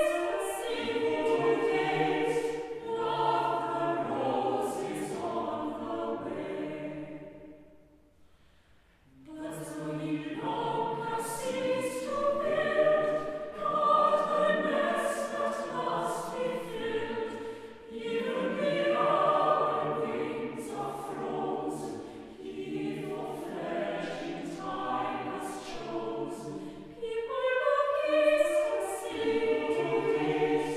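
Mixed choir singing a carol in a chapel. About eight seconds in the singing stops for a moment, then starts again.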